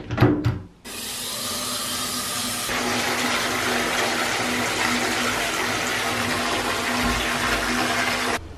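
A few short clicks as the bathtub's pop-up plug is pressed shut, then a bath tap running into the tub in a steady stream, getting fuller about three seconds in.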